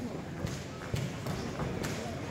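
Indistinct voices of spectators and corners carrying through a large sports hall, with three sharp knocks spread across it.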